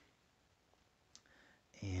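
Mostly quiet room tone with one faint, short click a little past the middle, then a man starts speaking near the end.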